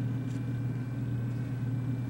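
A steady low hum with faint background hiss, unchanging throughout.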